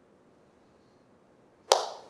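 A single sharp hand clap near the end, followed by a short echo.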